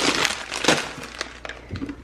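Stiff frozen plastic bags of shredded cheese crinkling and crackling as they are shoved around in a chest freezer. The sound is loudest in the first second, with a sharp crackle about two-thirds of a second in, then trails off into a few light clicks.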